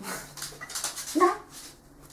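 A small dog gives a short whimper about a second in, over rustling as it is handled.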